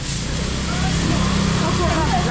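A motor engine runs with a steady low hum that grows louder about halfway through, under faint market voices.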